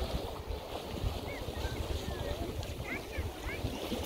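Wind buffeting the microphone in an uneven low rumble, over small lake waves lapping at the shore.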